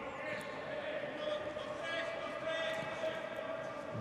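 Faint court sound in a large indoor handball arena: a handball bouncing on the court and players calling out, over a steady low hum.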